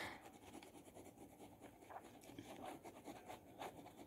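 Near silence with faint, irregular scratching of a pen on paper.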